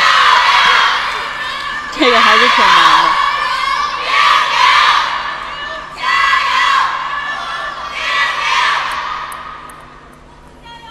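Arena crowd cheering a point just won in a table tennis match, the cheers surging in waves about every two seconds and dying down near the end. A single voice shouts out about two seconds in.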